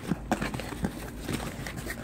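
Cardboard box being handled and turned over on a glass tabletop: a string of light, irregular knocks and scrapes.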